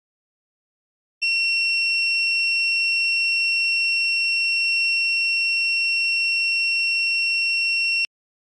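Electronic buzzer of a DIY water-tank overflow alarm sounding one continuous high-pitched tone, starting about a second in and cutting off abruptly at the end. It sounds while the probe wire is dipped into the water, which bridges the probes and signals that the water has reached the overflow level.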